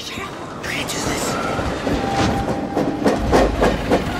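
Moving train rumbling and clattering on the rails, heard from inside a wooden boxcar, getting louder with heavier knocks in the second half.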